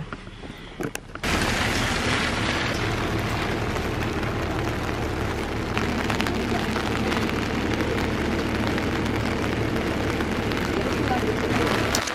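Wind rushing over the microphone in a light drizzle: a steady noise that starts abruptly about a second in and holds evenly.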